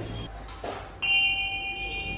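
Small bell on a large Tibetan Buddhist prayer wheel, struck once by the turning wheel about a second in and ringing on.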